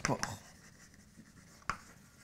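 Chalk writing on a blackboard: light scraping strokes with a sharp tap of the chalk about one and a half seconds in.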